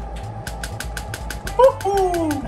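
Shockwave therapy applicator firing pulses into meat: a rapid, even train of sharp clicks that starts about half a second in.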